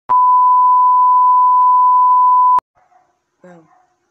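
Loud, steady 1 kHz test tone of the kind played with colour bars, held for about two and a half seconds and cut off suddenly with a click.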